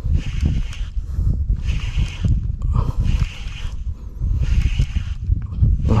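Small spinning reel (Seahawk Shujitsu SE 800) being cranked in four short bursts while a fish is reeled in on a bent ultralight jigging rod, over a steady low rumble.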